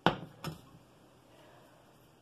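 A glass loaf pan set down on a smooth glass stovetop: a sharp knock, then a lighter second knock about half a second later.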